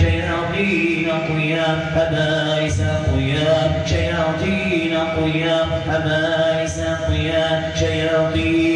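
A man chanting a melodic Arabic Quranic recitation for ruqya, in long held notes that glide up and down in pitch, without pause.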